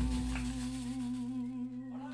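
The closing held note of a live song: a voice hums one long, slightly wavering note over a low bass note that fades away.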